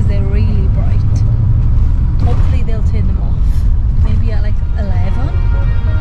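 Steady low rumble inside the cabin of a moving sleeper coach, from its engine and tyres on the road, with people's voices over it.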